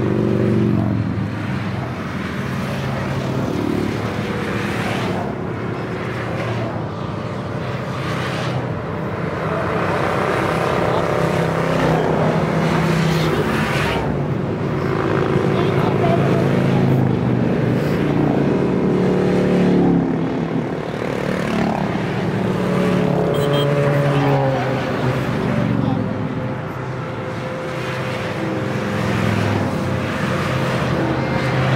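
A stream of motorcycles passing close by one after another, each engine note swelling and changing pitch as the bike goes by, with no break between them.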